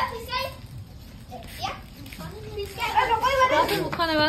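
Children's voices chattering and calling out while playing, louder in the second half.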